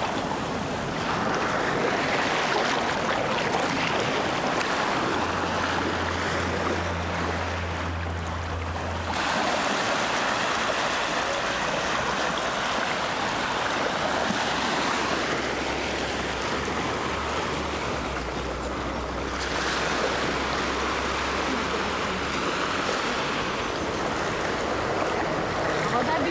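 Small waves washing in over the shallows and sand, each wash swelling and easing away in three long surges. A low steady hum comes in twice, in the first third and again in the last third.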